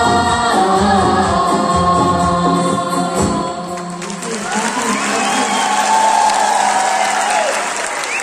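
A group of voices singing a Kashmiri song in unison with instrumental accompaniment. The song ends about four seconds in, and audience applause follows, with one long drawn-out voice held over it.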